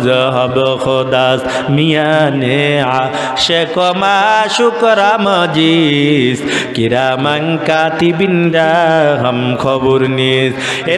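A man's voice chanting into a microphone in a sung, melodic style, with long held notes that waver up and down in pitch: a preacher delivering his sermon in a tune rather than plain speech.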